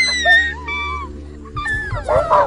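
High-pitched wailing cries of grieving children, several in a row, each sliding down in pitch, over a low steady music bed.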